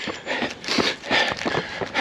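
A runner breathing hard, with footfalls, while pushing on late in a half marathon. It comes as noisy breaths at about two a second.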